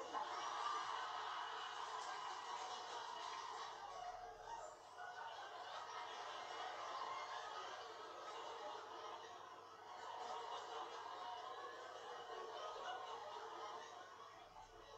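Studio audience laughing at length, a sustained wash of crowd laughter that swells and eases, heard through a television's speaker.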